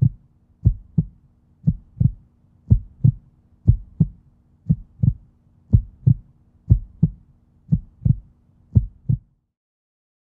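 Heartbeat sound effect: paired low thumps, lub-dub, about once a second over a faint steady low hum, ten beats in all, stopping about nine seconds in.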